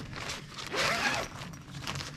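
Zipper being drawn up the fabric cover of a Panda portable clothes dryer in several short pulls, loudest about a second in.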